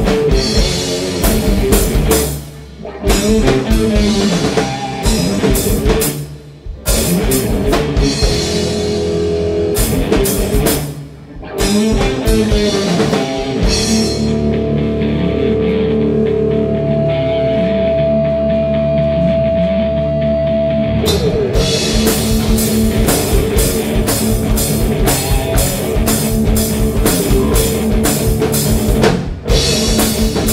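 Rock band playing live without vocals: electric guitars, bass and drum kit in stop-start hits with short breaks. About halfway through, the drums drop out for several seconds while the guitars hold sustained notes, then the full band comes back in.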